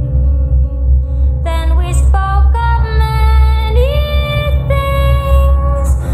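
Background song: long held melodic notes, some sliding up in pitch, over a heavy bass.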